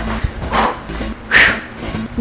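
A woman breathing out hard while doing jumping cardio, two forceful exhales about a second apart, the second the louder, over steady background workout music.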